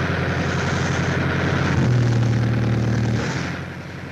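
Heavy road-roughening machine at work on a concrete road: its engine hum under a dense, rapid rattle of hammers striking the road surface. It gets louder about two seconds in and fades near the end.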